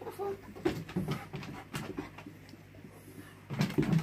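A dog's claws clicking and paws knocking on hard plastic raised dog platforms as it steps and jumps between them: a string of sharp, irregular clicks.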